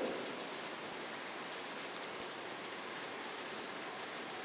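Steady, even hiss of background noise from the room and microphones, with a faint tick about two seconds in.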